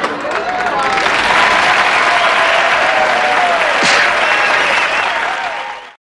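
Studio audience applauding and cheering, loud and continuous, cutting off suddenly near the end.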